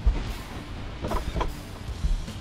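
Background music with drums.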